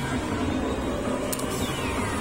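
Steady din of a busy amusement arcade, the running noise of many game machines, with a short falling tone near the end.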